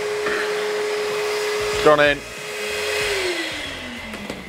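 Charcoal ash vacuum (charcoal hoover) running with a steady whine as it sucks cold ash out of a grill's firebox. About three seconds in it is switched off and its pitch falls as the motor spins down.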